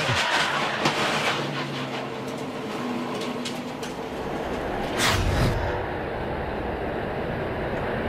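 In-car audio of a stock car's V8 engine running at low speed, with the car's body rattling. About five seconds in there is a loud rushing burst, and then the sound turns duller.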